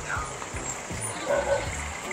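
Street background noise: a steady low rumble of passing traffic, with faint distant voices.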